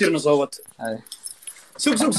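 A man's voice speaking, broken about a second in by a short, faint, high metallic jingle before the talk resumes.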